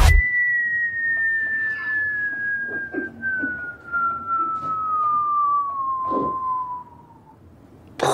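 One long whistle falling slowly and steadily in pitch for about seven seconds, then stopping: the falling-bomb whistle, heard from the back of the room as a jeer at a stand-up set that is going badly.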